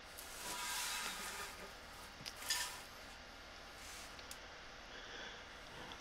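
Faint handling noise: soft rustling and scraping of plastic plumbing parts being moved, with a brief louder scrape about two and a half seconds in.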